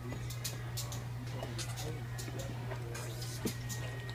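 Indoor room ambience: a steady low hum under faint background voices, with scattered light clicks.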